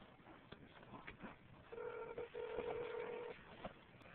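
Telephone ringback tone heard through a phone's speaker: one steady ring of about a second and a half, starting about two seconds in, while the outgoing call waits to be answered.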